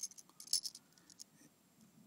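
A fishing lure's metal hooks clinking and rattling against a SpinMate Click 2 Knot, a hand-held plastic knot-tying tool, as the lure is set into it. There are a handful of light, sharp ticks in the first second or so.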